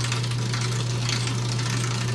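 Motor of film-reel equipment running: a steady low hum with a busy mechanical rattle over it.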